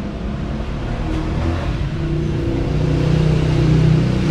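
A motor vehicle engine running, a steady low hum that grows louder toward the end.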